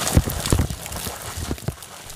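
Rainwater gushing from a downspout and splashing onto flooded pavement: a steady rush, with a few irregular low thumps through it.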